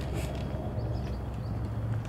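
A steady low mechanical hum, with faint scattered clicks over it.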